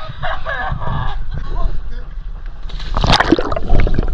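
Voices calling at the water's surface, then from about two-thirds of the way in a loud rush of splashing and sloshing as a water-level action camera goes under, among divers' bubbles.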